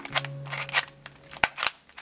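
Cheap dollar-store plastic 3x3 puzzle cube being turned quickly by hand: a run of sharp plastic clicks and clacks, about four of them standing out, as the layers are twisted through a solving algorithm.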